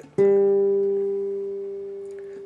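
A guitar note plucked once, about a fifth of a second in, then left to ring out and fade slowly.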